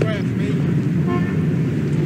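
Street ambience with a steady low traffic rumble and crowd voices in the background, with a brief held tone about a second in.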